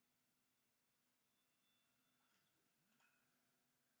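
Near silence: the soundtrack is essentially muted.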